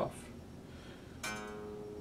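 A single note plucked on the low E string of an unplugged DIY Telecaster-style kit guitar, fretted at the fourth fret. It starts a little past halfway and rings on clearly, not buzzing: from the fourth fret up, the string clears the bent neck.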